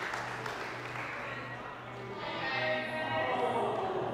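A small group clapping, fading out over the first two seconds, then background music with sustained tones coming in.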